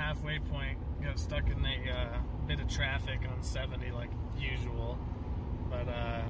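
Steady road and engine rumble inside the cab of a moving Ram Rebel pickup, under a man's talking.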